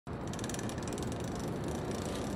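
Bicycle rear freewheel hub clicking in a rapid, even run of ticks as the bike coasts, fading toward the end, over a low rumble.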